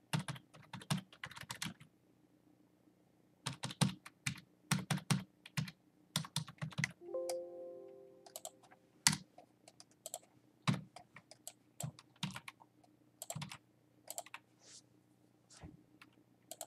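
Computer keyboard typing in short bursts of keystrokes. A brief pitched tone, held for about a second and a half, sounds about seven seconds in.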